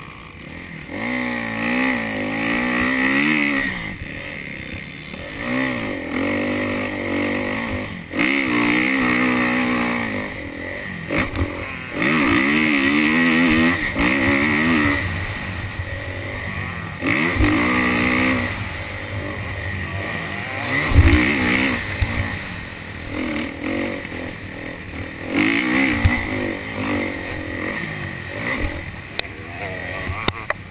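Motocross bike engine heard from the rider's helmet, revving up and down in repeated surges as it accelerates, shifts and backs off through the lap, with a few sharp knocks along the way.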